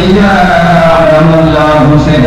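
A man chanting a devotional Islamic recitation, holding long drawn-out notes whose pitch glides slowly.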